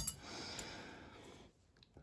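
A faint breath out, lasting a little over a second.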